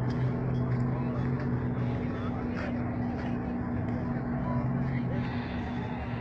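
A steady engine drone holding one pitch, with people talking in the background.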